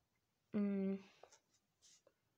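A woman's voice holding one vowel for about half a second, then a few faint scratches of a pen writing on notebook paper.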